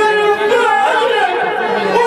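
A man's voice singing through a microphone in long, held, wavering notes in the style of Islamic devotional chant, with other voices talking over it.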